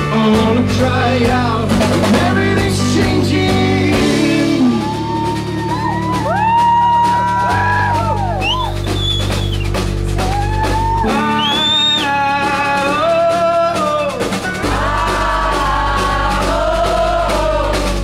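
Live rock band playing: drum kit and keyboards over sustained low bass notes that change about every three and a half seconds, with a high melody of bending, gliding notes above.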